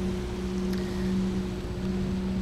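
Washington State car ferry's engines running: a steady low drone with a constant hum.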